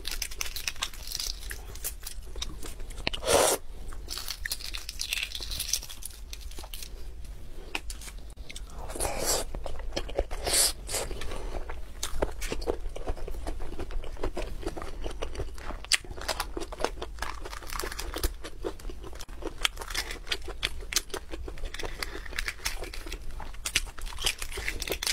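Close-miked peeling and eating of braised eggs: shell crackling and tearing as it is picked off, mixed with chewing and wet mouth sounds. A few louder cracks stand out, about 3 seconds in and again about 10 seconds in.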